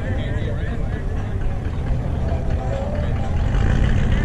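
A custom classic car's engine and exhaust rumbling as it drives slowly past and pulls away, getting louder in the last second. Voices carry in the background.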